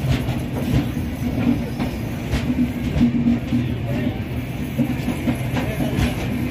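Indian Railways passenger sleeper coaches of an arriving express rolling past. The wheels give a steady rumble, with irregular clicks over the rail joints.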